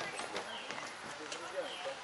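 Outdoor ambience of distant, indistinct voices and short repeated bird chirps, with the light knocks of footsteps on paving.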